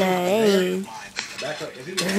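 A person's voice making drawn-out wordless sounds, with a few light clicks in the middle.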